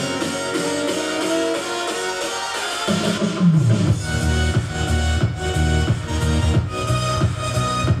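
Electronic dance music playing through the LG Signature ZX 88-inch OLED TV's built-in speakers, which sit in its stand. A melodic intro runs for about three seconds, then a falling bass sweep brings in heavy bass and a steady beat. After it, the listener calls it good sound.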